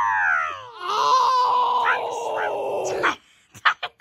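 A boy's voice wailing without words: a cry that falls in pitch, then a long held high note that cuts off abruptly about three seconds in.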